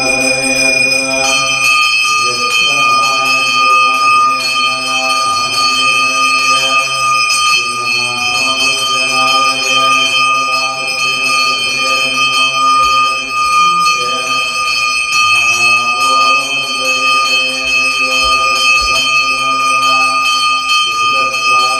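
A brass puja hand bell (ghanta) rung continuously during the lamp offering, its high ringing tones held steady without a break.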